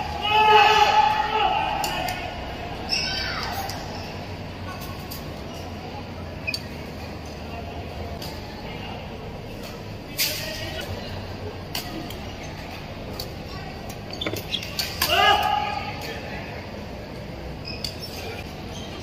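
Badminton being played in a large echoing hall: sharp, scattered clicks of rackets striking the shuttlecock, with short high-pitched squeals near the start and again about fifteen seconds in, over the steady background noise of the venue.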